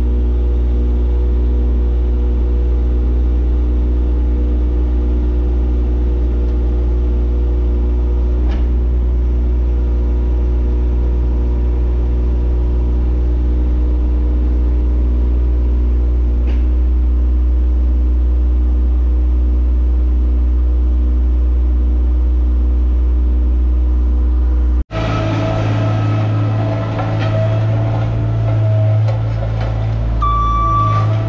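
Loader's diesel engine running steadily at a constant pitch, heard from inside the cab while it spreads crushed concrete. About 25 seconds in, the sound cuts abruptly to a Hamm HD12 twin-drum vibratory roller running as it compacts the crushed concrete, with a steady high tone over its engine.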